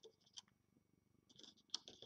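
Near silence with a few faint clicks and soft rustles of rubber bands being looped onto the plastic pins of a Rainbow Loom. The clicks come more often from about midway.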